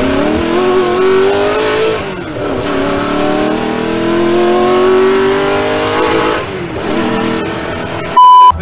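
Race-car engine accelerating hard through the gears, its pitch climbing steadily and dropping back at two gear shifts, about two and six seconds in.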